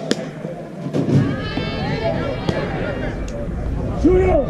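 A sharp pop right at the start as a pitched softball smacks into the catcher's mitt, followed by players and spectators calling out and cheering.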